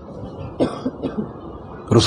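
A person coughing briefly, a few short bursts beginning about half a second in, in a pause between sentences of a lecture.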